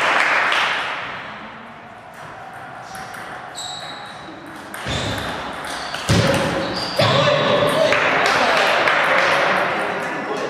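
Table tennis rally: the ball clicking off bats and table a few times around the middle, with applause dying away at the start and voices and noise from the hall after the point.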